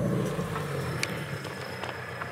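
Car engine running with a low hum that is loudest at the start and gradually eases off, with a single click about a second in.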